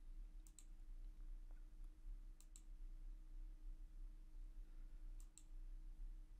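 Faint computer mouse clicks: three separate clicks, each a quick press-and-release pair, spaced a couple of seconds apart, over a low steady electrical hum.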